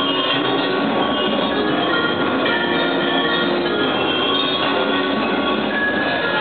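Percussion ensemble playing a continuous, dense wash of sound, with short high sustained tones scattered over it.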